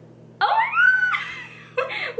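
A woman's high, excited squeal of delight, rising in pitch about half a second in and breaking into laughter, over a faint steady low hum.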